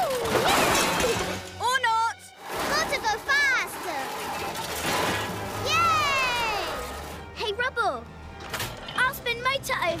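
Cartoon soundtrack of background music with short, high-pitched character vocalisations: excited cries and squeals rather than words. About six seconds in there is one long falling glide.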